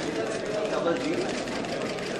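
Indistinct voices of several people talking at once in a room, a steady murmur of conversation with no one voice standing out.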